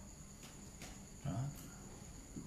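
Faint, steady, high-pitched trilling of crickets.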